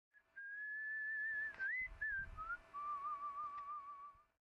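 Whistling over the intro logo: a high note held for about a second and a half, a quick upward slide, two short notes, then a lower note held with a wavering pitch that fades out just after the end. A soft low thud comes about two seconds in, over a faint steady hum.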